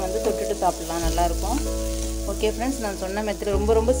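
Sliced potatoes sizzling in a frying pan as a metal spatula stirs them, with background music playing a wavering melody over held low notes that change twice.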